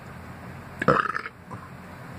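A man burps once, a short burp about a second in.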